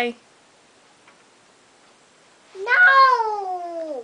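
A small girl's voice holds one long note, about two and a half seconds in, that rises briefly and then glides slowly down in pitch.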